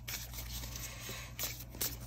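Quiet room tone with a steady low hum, broken by a few faint, short taps and rustles of handling, two of them near the end.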